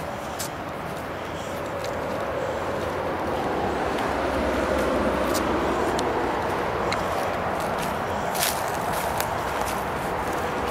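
Steady rush of motorway traffic from the bridge ahead, swelling slightly midway, with a few footsteps on the dirt path.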